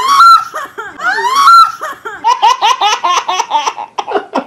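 A high, rising squeal heard twice, identical each time as if looped, then from about two seconds in a baby laughing hard in rapid, high-pitched bursts.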